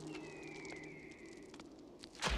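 Faint open-air ambience with a single high bird call gliding slowly downward for about a second and a half, while a low musical hum fades out.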